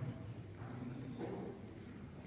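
Footsteps on a hard cave walkway, with faint distant voices.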